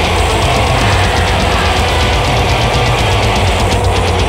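Epic black metal playing at full volume: a dense, steady wall of distorted guitars over fast, even drumming and heavy bass.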